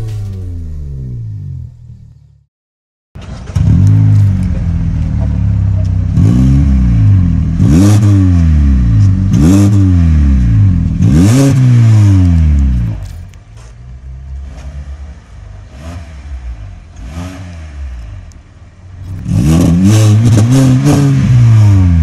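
Kia Optima 2.4's four-cylinder engine heard through its tuned exhaust with a vacuum-operated valve, revved in repeated sharp blips whose pitch climbs and falls back. Revving starts a few seconds in after a brief dropout to silence. A quieter stretch follows in the middle, then loud revving again near the end.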